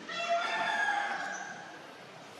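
One drawn-out animal call with many overtones, lasting about a second and a half: it starts sharply, is loudest early on and then fades away.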